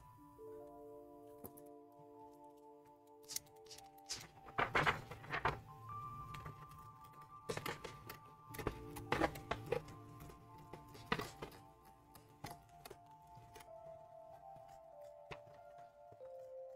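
Soft background music of sustained, slowly changing notes, over a series of short, faint crunching snips and paper rustles from 3D-printed resin scissors cutting a sheet of paper, most of them in the middle of the stretch.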